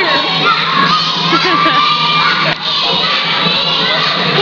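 A group of children shouting and cheering at once, many voices overlapping without letup.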